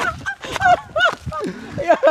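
Two men laughing heartily in a string of short separate bursts.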